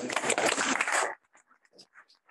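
Audience applauding, a dense patter of many hands clapping that cuts off abruptly about a second in, leaving a few faint scattered sounds.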